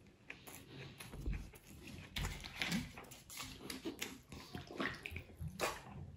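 A man speed-eating chicken biryani by hand: irregular wet chewing and mouth noises, with fingers scooping rice in a steel bowl.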